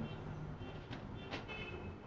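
Faint strokes and squeaks of a marker writing on a whiteboard, a couple of short scratches about a second in, over a steady low room hum.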